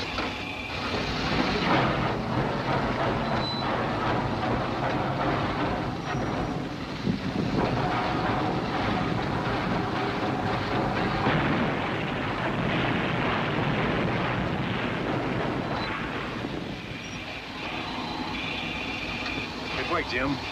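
Steam locomotive under steam, pulling hard on a taut cable: a dense clatter and rumble.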